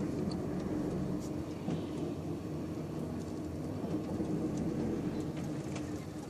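Steady engine drone and road noise heard from inside a moving vehicle as it drives through city streets, with a low hum holding a constant pitch.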